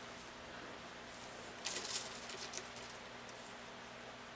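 A brief rattling clatter of small hard pieces being handled at a shotshell reloading bench, starting about a second and a half in and lasting about a second.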